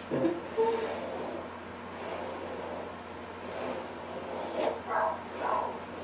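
Faint rustling of a wooden hairbrush being drawn through long straight hair, with a couple of soft murmurs about five seconds in.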